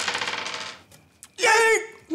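Dice rattling as they are shaken in a cupped hand for a board-game roll, the rattle fading out within the first second, followed by a single sharp click about a second in.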